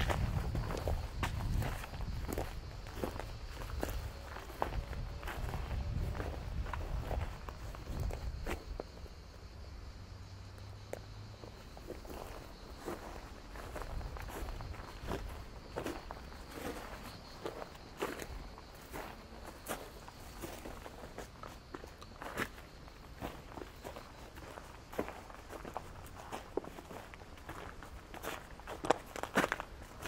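Footsteps of one person walking at an even pace over stony, grassy ground. A low rumble in the first several seconds dies away about eight seconds in.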